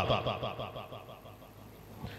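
The tail of a man's voice through a microphone and public-address system, trailing off into a fast, fluttering echo whose repeats fade away over about a second and a half.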